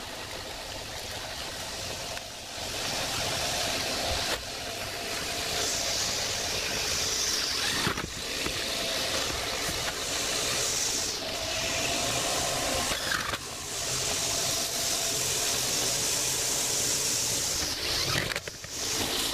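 Corded electric drill running in two long bursts, one about five seconds in and another from about fourteen seconds in, as it works at the metal roof panels. Throughout there is a steady rushing noise.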